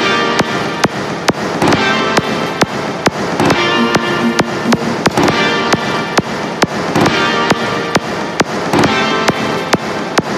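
Instrumental karaoke backing track (MR) of a pop song with a steady, sharply hit drum beat at about two beats a second, under chords and a held melody line; no one is singing.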